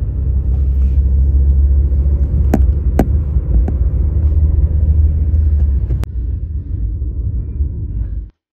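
Low, steady road and wind rumble inside a moving car, with a few sharp clicks midway. The rumble eases slightly after a last click about six seconds in.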